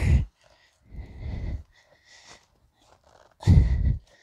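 Wind buffeting an outdoor microphone in gusts: low rumbling blasts, three of them, the loudest near the end.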